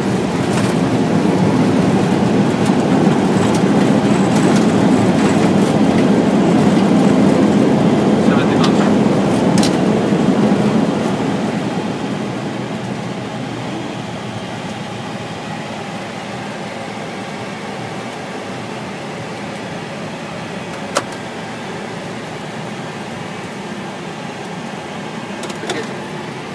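Steady loud rumble of engines and wheels inside an Airbus airliner's cockpit during the landing rollout. It eases down about eleven seconds in as the aircraft slows. A single sharp click comes about 21 seconds in.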